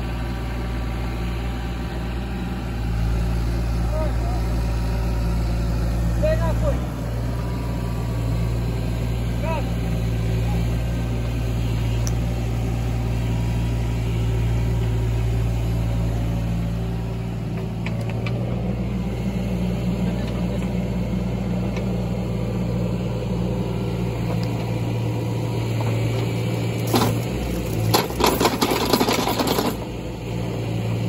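An engine idling steadily, a low even hum that holds one pitch, with a short run of sharp clicks and knocks near the end.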